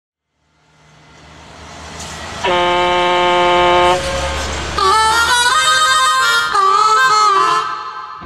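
Intro of a country-blues song: a low rumble fades in from silence, a long steady horn-like chord sounds for about a second and a half, then a blues harmonica plays wailing, bending notes.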